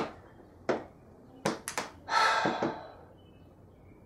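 A few short, sharp clicks and taps in the first two seconds, as a person handles a small object, then a breathy exhale of about a second that fades away.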